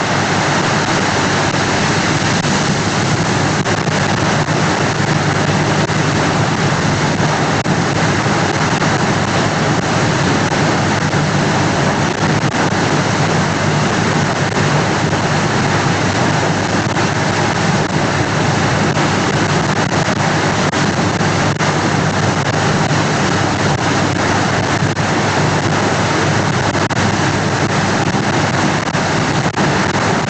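Loud, steady static hiss with a faint low hum band, unbroken and unchanging, in place of the lecture audio: no speech comes through although the preacher is still talking.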